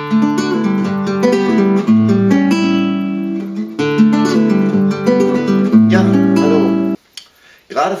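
Nylon-string classical guitar played with the fingers: a short phrase of ringing chords, the same phrase played twice, stopping suddenly about seven seconds in.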